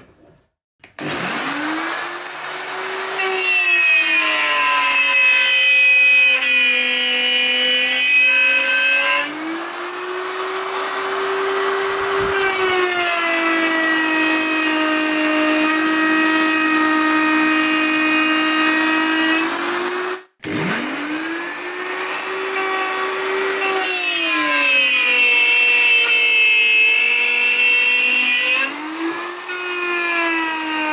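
Electric plunge router spinning up and running, its whine sagging in pitch as the bit cuts a housing (dado) into MDF and climbing back when it runs free. It cuts off abruptly about two-thirds of the way through and spins straight back up for another cut.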